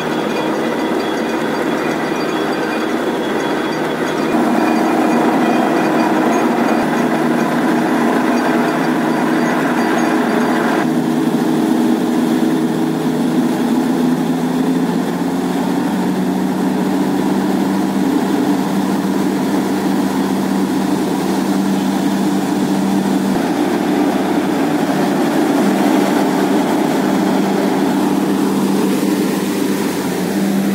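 Truck-mounted borewell drilling rig running steadily while drilling, a loud machine drone with steady humming tones. It steps up in level about four seconds in and changes pitch about eleven seconds in.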